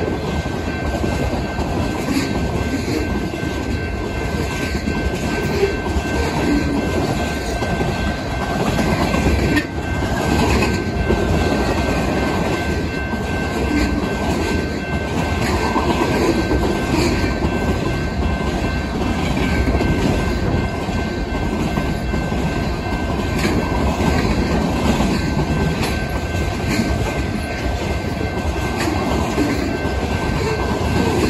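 Freight cars of a fast-moving manifest train rolling past: a steady rumble of steel wheels on rail, with clicking as the wheels cross rail joints and a thin steady high whine.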